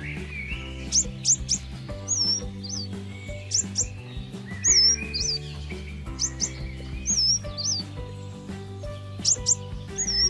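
Small birds chirping, with quick high upward chirps and wavering whistled notes recurring every couple of seconds, over background music made of steady held low notes.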